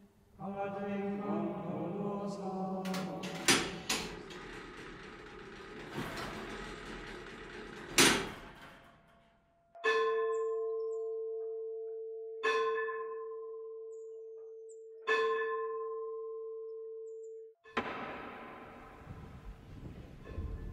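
Church bell struck three times, about two and a half seconds apart, each stroke ringing on one steady tone and slowly dying away. Before the strokes comes a jumble of ringing tones and sharp knocks.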